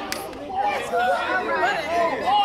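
Speech only: a man's voice over crowd chatter.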